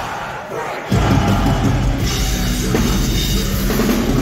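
Metalcore band playing live with distorted guitars and drum kit. For about the first second the bass and low end drop out, then the full band comes back in.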